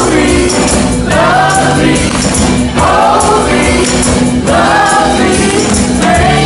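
A live rock band plays with a woman singing loudly in phrases over drums, electric guitar and a shaken tambourine.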